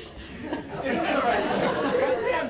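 Indistinct talking and chatter from several voices, quieter at first and louder from about a second in, with no clear words.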